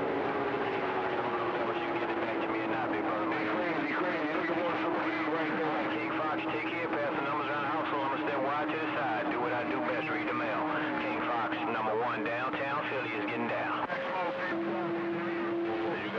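CB radio receiving skip: several distant stations talking over one another, garbled and hard to make out, with a steady whistle of a carrier heterodyne running under the voices. Near the end the whistle breaks off briefly, then comes back at a different pitch with a second, lower tone.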